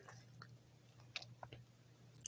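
Near silence, with a few faint pops and ticks from oil bubbling around breadcrumb-coated kababs shallow-frying on an iron tawa over medium-low heat.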